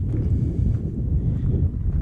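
Wind buffeting an action camera's microphone: a steady, loud low rumble.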